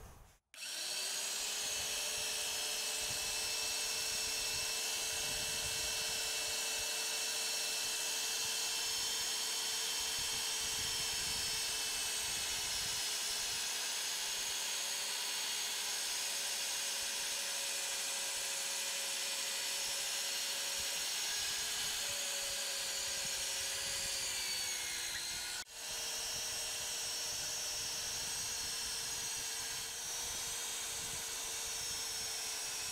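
VEVOR MD40 1100 W magnetic drill motor running steadily as a 10 mm twist drill bores through a metal plate about 5 mm thick. Its pitch sags slightly under load shortly before a brief break near the end, then it runs steadily again.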